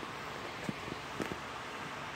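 Quiet, steady room hiss with two or three faint clicks as the phone is handled.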